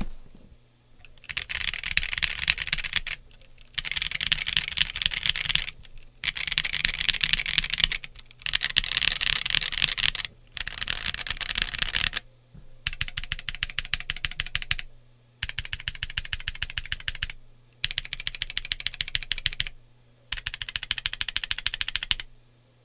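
Typing on a stock Monsgeek M1 mechanical keyboard with Gazzew U4T tactile switches, the stock polycarbonate plate and Akko ASA-profile keycaps, in about nine bursts of fast keystrokes, each about two seconds long, with short pauses between them. A little ding or ping can be heard in the keystrokes; it is not super loud, and the owner means to remove it with a force break mod.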